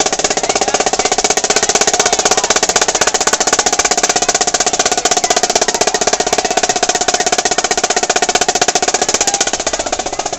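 Marching drums, played in a fast, unbroken run of rapid, even strokes like a drum roll.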